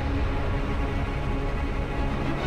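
Tense background music, a low, steady held sound with no beat breaking through.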